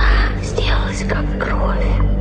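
Whispered voice, hissy syllables coming every few tenths of a second, over the low, steady drone of a dark ambient witch house track.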